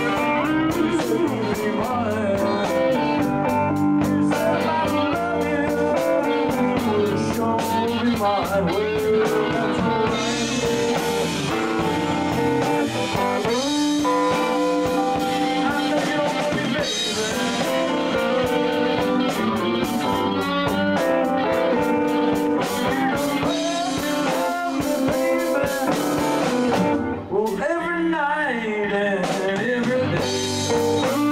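A live band playing a blues-rock number on electric guitars with a drum kit, the guitar lines bending in pitch. The playing drops out briefly near the end, then carries on.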